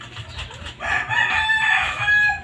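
A rooster crowing: one long, loud call that begins about a second in and runs just past the end.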